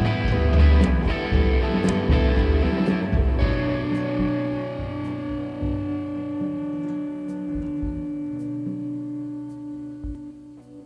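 A rock band plays live on electric guitars, bass and drums. About three and a half seconds in the full band thins out, leaving sustained guitar chords ringing and slowly fading.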